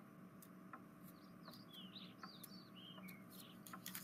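Near silence: room tone with a string of faint, short, high chirping calls from small birds through the middle, and a few faint clicks.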